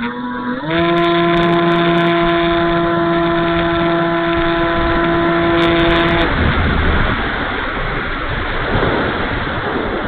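E-flite Timber RC plane's electric motor and propeller, heard from on board: a steady hum that steps up in pitch about half a second in as the throttle opens, holds for about five seconds, then cuts off suddenly as the throttle is closed. After that, only wind rushing over the airframe is heard as the plane glides.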